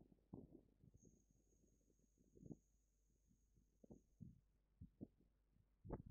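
Near silence: faint, irregular low thumps and crackles, with a thin, faint high whine from about a second in until past the middle.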